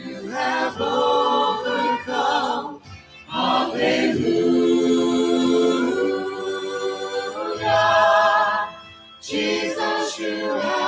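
Mixed choir and praise team singing a worship song in held phrases with vibrato, with short breaks between phrases about three seconds in and again near the end.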